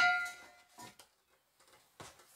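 A few faint clicks and light knocks as an RV dinette tabletop and its metal pedestal leg are handled and turned over, separated by near silence.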